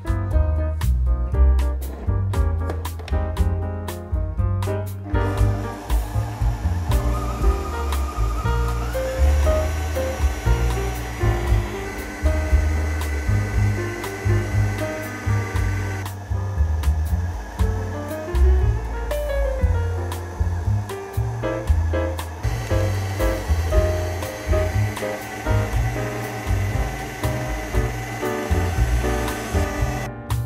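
Electric stand mixer running steadily, its beater creaming butter and sugar in a stainless steel bowl. The motor whir starts about five seconds in, under background piano music.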